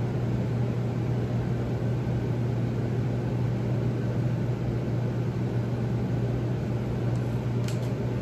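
A steady, low mechanical hum that holds an even pitch and level throughout.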